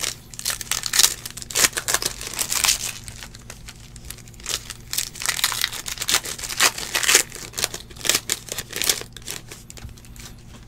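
Foil trading-card pack wrapper crinkling and tearing as it is opened by hand, with cards riffling against each other, as a dense run of irregular crackles that comes in spells.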